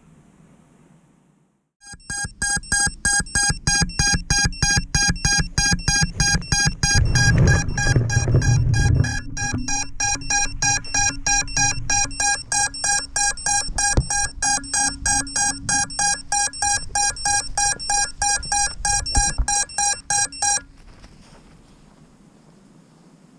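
An FPV quadcopter's lost-model buzzer beeping fast at one fixed pitch, about three beeps a second, the locating alarm of a downed quad. It starts about two seconds in and cuts off suddenly near the end, with some low rumbling around its middle.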